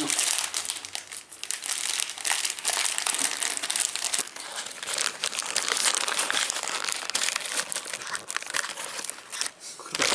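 Metallized plastic chip bag, turned foil side out, crinkling continuously as hands gather its neck and tie a ribbon around it.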